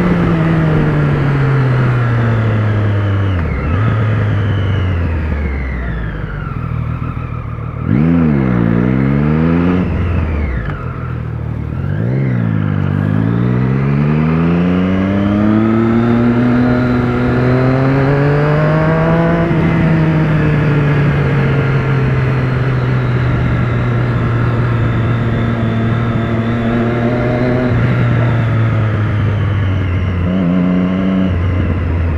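Motorcycle engine heard from the rider's seat: revs fall off on a closed throttle at first, dip and pick up sharply twice, then climb steadily under acceleration and settle to an even cruising note for the second half.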